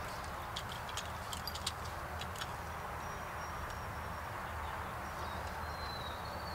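Quiet outdoor background hum with a few light clicks and taps from a plastic hose spray nozzle being handled, plus a faint thin high whistle near the end.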